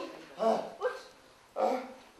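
Three short, loud vocal calls, about half a second, one second and a second and three-quarters in.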